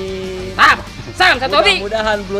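Voices with music: a held pitched note, then a short loud shout about half a second in, followed by more pitched, chant-like vocal phrases.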